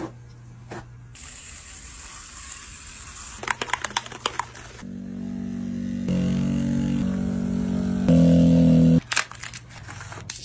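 Plastic or paper rustling and tapping as a tattoo station is set up, then a rotary tattoo pen buzzing with a steady pitched hum for about four seconds, stepping louder and higher about once a second as it is turned up, and cutting off suddenly.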